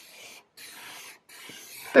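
Black Sharpie felt-tip marker scratching across sketchbook paper as flower petals are drawn, in three strokes of about half a second each with short pauses between.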